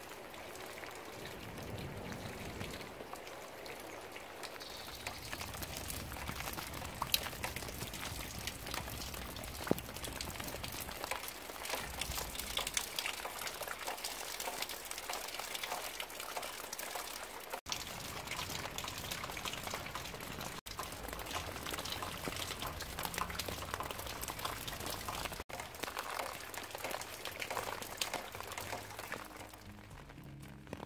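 Steady rain falling, with many separate drops tapping close by. The sound drops out for a split second three times in the second half.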